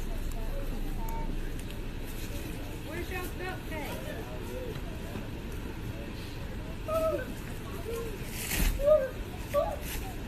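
Indistinct talk and exclamations from several bystanders over a steady low rumble, with a sharp knock about eight and a half seconds in.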